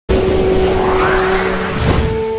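Channel intro sound effect: a loud whoosh that starts abruptly, with a sweep rising in pitch through the middle over a steady held tone, leading into the intro music.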